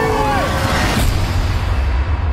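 Trailer sound design: a brief pitched sound that rises and falls, then a rising whoosh that peaks in a sharp hit about a second in, over a continuous low rumbling drone.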